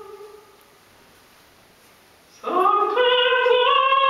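Unaccompanied solo singing in a high voice: a long held note fades out, and after a pause of about two seconds a new phrase begins, sliding up into a long sustained note.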